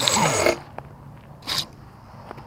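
Air rushing over a small camera's microphone that cuts off abruptly about half a second in as the camera comes down in grass, then one short scuffing noise about a second and a half in.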